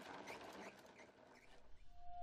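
Near silence: a faint hiss fading away, with a few faint short chirps in the first second.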